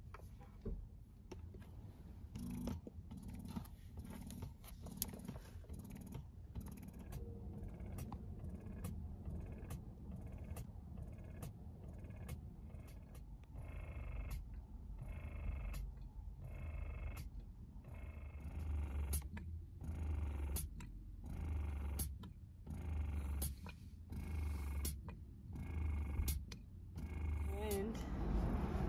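Electric breast pump running, its motor pulsing in a steady rhythm of about one stroke every second and a half that grows more distinct about halfway through, with faint clicks.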